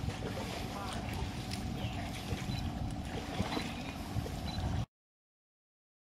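Steady low outdoor rumble with faint voices over it, cut off abruptly to silence near the end.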